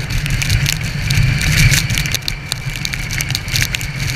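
Honda CB650F inline-four motorcycle cruising on a wet highway on its stock exhaust, its engine largely buried under steady wind rumble on the camera microphone, with many small clicks of rain striking the camera.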